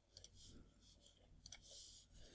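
Faint computer mouse clicks: a quick pair near the start and a single click about a second later.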